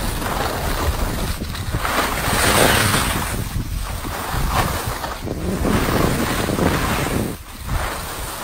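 Skis hissing and scraping over a groomed piste, with wind rushing over the microphone of a camera carried at speed. The noise swells and fades with each turn, every second or two, and dips briefly near the end.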